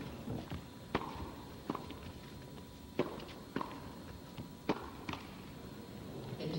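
Tennis ball being hit back and forth with racquets during a doubles rally, heard as about seven sharp pops of racquet strikes and ball bounces, half a second to a second apart.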